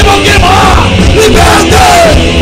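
Hardcore punk band playing loud, with a shouted lead vocal over distorted electric guitar, bass and drums, in a raw live recording.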